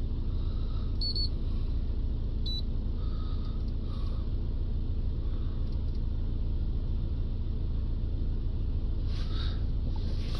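Ford Transit diesel engine idling steadily, a low even rumble heard from inside the cab. Two short, faint electronic beeps come about one second and two and a half seconds in.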